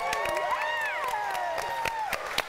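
A small group of people clapping, with long cheering whoops held over the clapping.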